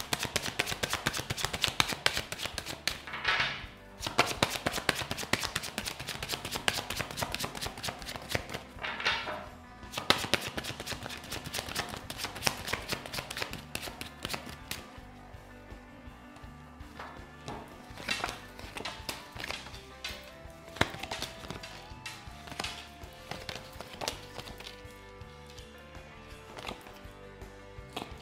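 Tarot cards being shuffled by hand: a dense run of quick card clicks with a couple of brief breaks through the first half, thinning to scattered clicks in the second half. Soft background music underneath.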